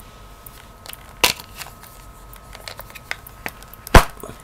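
Handling noise from a Samsung Galaxy S4 spare battery and its plastic charging cradle being moved about on a tabletop: faint small clicks, a light tap about a second in, and a sharp knock near the end as the hand comes down on the cradle and battery.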